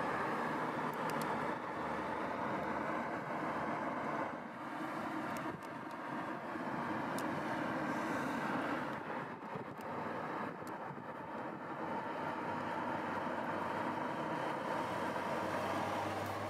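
Porsche 911 Carrera 4S with its turbocharged flat-six running, a steady engine and road sound that dips briefly about four seconds in.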